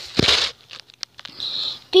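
Handling noise: a soft thump with rustling just after the start, then two faint clicks and a short hiss.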